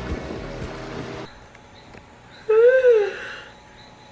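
Background music that cuts off about a second in, then a woman's loud, drawn-out yawn, about half a second of voice whose pitch rises and falls, in a small quiet room.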